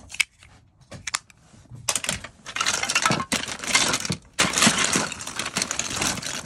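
A few small clicks, then from about two seconds in a dense clatter of small hard plastic toys, loose action figures and accessories knocking together as a hand rummages through a heaped box of them, with a brief pause in the middle.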